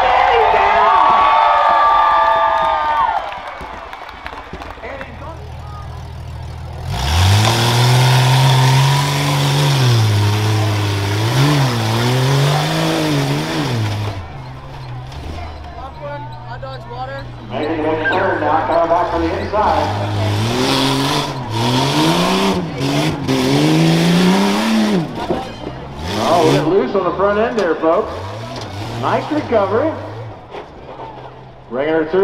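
Rough-truck SUV engine revving hard and easing off over and over on a dirt course, its pitch climbing and dropping in repeated surges, with a loud rushing noise over the first long rev.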